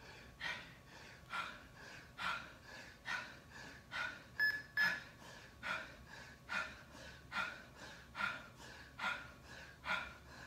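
A man breathing hard and rhythmically while doing push-ups, a forceful breath a little under once a second. About halfway through there are two short, high beeps.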